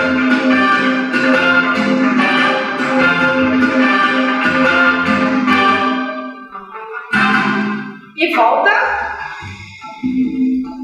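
Background music with a steady beat and a melody over it; it thins out and breaks briefly about seven seconds in, then comes back with a rising sweep.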